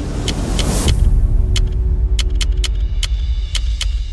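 Typing sound effect: sharp keystroke clicks at an uneven pace, about two or three a second, accompanying text being typed out. A whoosh swells and cuts off about a second in, followed by a deep steady rumble.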